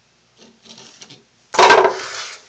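Paper being handled and gathered up, with faint rustles and then a sudden loud rustle close to the microphone about a second and a half in.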